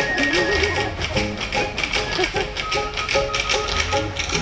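Tap-dance steps clattering in quick rhythm over the musical accompaniment of a stage number.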